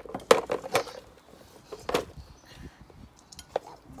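Hand trowel digging in soil: a series of sharp scrapes and knocks, the loudest clustered in the first second, with more about two seconds in and near the end.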